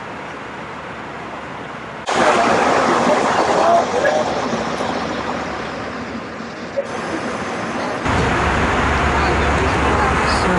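Cabin crew talking and laughing loudly behind the galley curtain of an airliner, over the steady drone of the cabin. The voices break in suddenly about two seconds in, and a heavier low drone comes up near the end.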